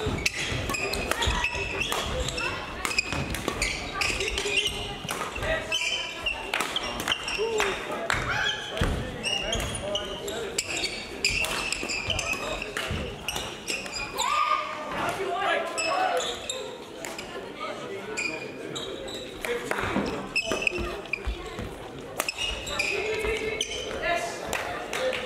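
Badminton hall ambience: repeated sharp racket strikes on shuttlecocks and shoe squeaks on the court floor, with voices of players and spectators in the background, all echoing in the large hall.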